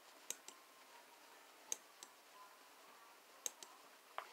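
Faint computer mouse clicks: three pairs of quick clicks, about a second and a half apart.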